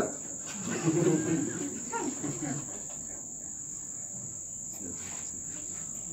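A steady high-pitched trill or whine runs on without a break. Faint, muffled speech sounds under it in the first half.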